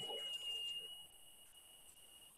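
Near silence with a faint, steady, high-pitched whine, an electronic tone in the recording. The last words before it fade out in the first second, and the whine grows fainter after that.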